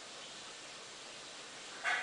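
A golden retriever gives one short whine near the end, over a steady background hiss.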